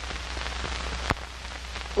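Steady hiss and crackle of an old film soundtrack on a worn tape transfer, over a low steady hum, with a sharp click about a second in.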